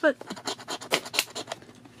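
Coin scratching the coating off a paper scratch-off lottery ticket in a quick run of short strokes that die away near the end.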